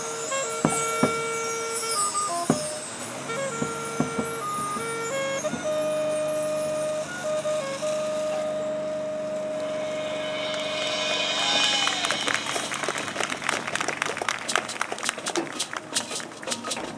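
High school marching band playing its field show: a soft passage of long held wind notes over a sustained chord, then percussion coming in with quick, dense strikes in the last few seconds.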